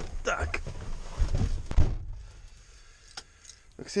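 Rustling handling noise and a few dull thumps, the loudest just before two seconds in, as someone moves about inside a truck cab. A few small clicks follow in a quieter stretch.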